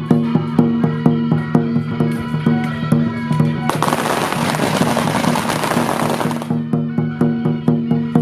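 Traditional temple procession music: sustained held tones over a steady wood-block beat of about five ticks a second. From about four seconds in, a string of firecrackers goes off in a dense crackle for nearly three seconds, louder than the music, then stops while the music carries on.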